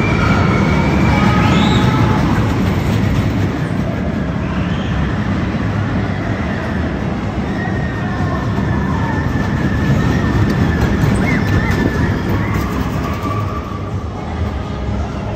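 Tiger Terror steel roller coaster train rolling along its track: a steady rumble of wheels on steel rail, with a thin high squeal for a few seconds in the second half.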